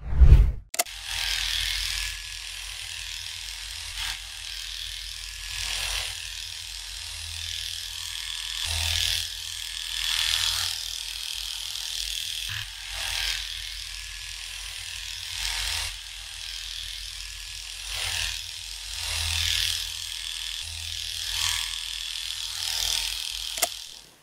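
Electric pet hair clipper running with a steady buzz, swelling louder every couple of seconds as it is drawn through the fur. A short heavy thump comes at the very start, just before the clipper starts.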